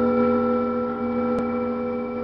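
Experimental music from a cello-triggered rig of circuit-bent instruments: several steady held tones ring on together and slowly fade. A single sharp click sounds about a second and a half in.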